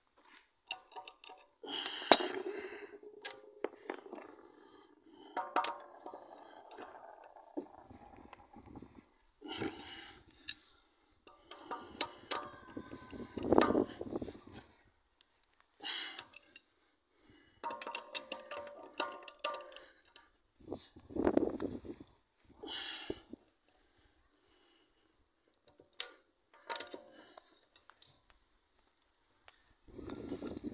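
Wheel bolts being tightened by hand with a steel socket and wrench bar: metal clinks and clicks as the socket is fitted onto each bolt and turned, in short bursts with pauses between bolts.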